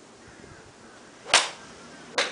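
A golf club striking a golf ball off a driving range mat: one sharp, loud crack about a second and a third in.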